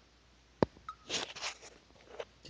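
A single sharp click a little over half a second in, followed by a few soft rustling handling sounds.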